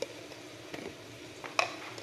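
Spice jars and lids being handled on a kitchen counter: a few light clicks and taps, the sharpest about one and a half seconds in, over a faint steady background noise.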